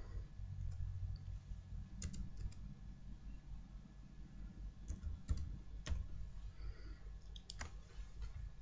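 Computer keyboard keys pressed one at a time, about ten separate clicks at irregular gaps, some in quick pairs, while a word is typed, deleted and retyped, over a faint low hum.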